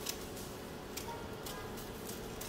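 Small scissors snipping through the lace of a lace-front wig, a few short crisp clicks spread over the two seconds, with faint music underneath.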